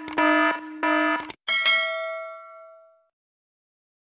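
Subscribe-button sound effect: a pitched electronic tone sounds in two short pulses with clicks, then a single bell-like ding rings out and fades over about a second and a half.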